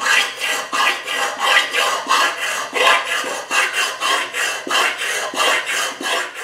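Hand file being stroked back and forth over a welded sheet-steel fan shroud, in a steady rasping rhythm of about three strokes a second: file finish work on the ground-down welds.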